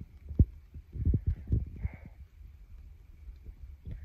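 Irregular low thumps and knocks on a handheld phone's microphone from handling: one sharp knock about half a second in and a cluster around a second in, over a faint steady high-pitched tone.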